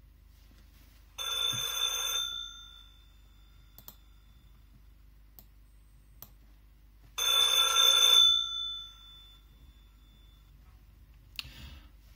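A 1960s GPO rotary telephone's twin bells ringing in two bursts of about a second each, roughly six seconds apart, each fading away as it ends. The ring comes from the Raspberry Pi program at startup and signals that the phone is connected.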